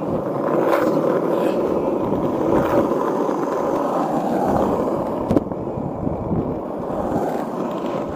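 Skateboard wheels rolling over rough asphalt: a steady grinding rumble, with a single sharp click about five and a half seconds in.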